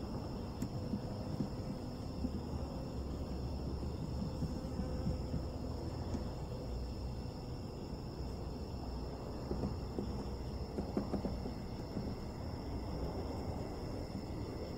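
Steady night background of crickets trilling over a low rumble, with a few faint knocks near the end as a wooden hive frame is lowered into a box of bees.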